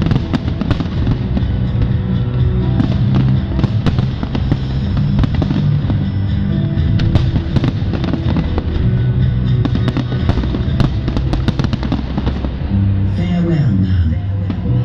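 Aerial fireworks going off in a dense run of sharp bangs and crackles over loud music from the display's sound system.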